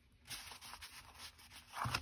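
Faint rustling and light scraping of cardstock card bases being handled and set down on a cutting mat, with one short louder sound near the end.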